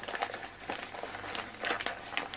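A clear plastic kit pack with paper inside crinkling and rustling as it is handled, with scattered light rustles and a somewhat louder crinkle near the end.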